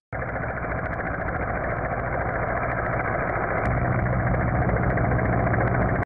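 A steady, engine-like rumble that starts abruptly just after a moment of silence and slowly grows a little louder.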